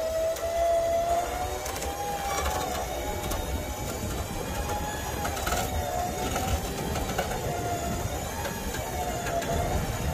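A winch pulling a car up onto a flat-deck trailer: its motor gives a steady whine that wavers slightly in pitch under the load.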